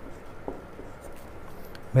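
Marker pen writing on a whiteboard: a few short, faint strokes.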